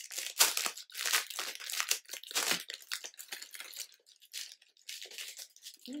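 A store-bought decoration's packaging being torn open and crinkled by hand: a string of irregular rustling and tearing bursts, busiest in the first three seconds, then sparser.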